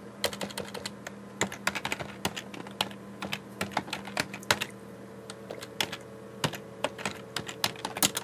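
Keystrokes on a computer keyboard: irregular runs of sharp clicks, typed in quick bursts with short pauses. A faint steady hum sits underneath.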